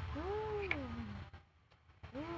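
A single drawn-out vocal call, about a second long, rising and then falling in pitch, then quiet.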